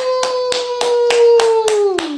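Hands clapping in an even rhythm, about seven claps in two seconds, over a long held 'woo' cheer that sags in pitch and trails off near the end.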